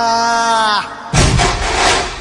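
A Marathi devotional song to Ganpati playing, its singer holding one long note that ends just under a second in. A little later comes a loud, sudden boom that fades away over about a second.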